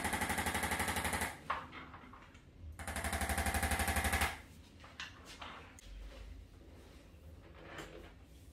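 Corded electric chiropractic adjusting instrument (an ArthroStim) firing rapid, even percussive taps into a patient's upper back. There are two bursts of about a second and a half each, with a pause of about a second and a half between them.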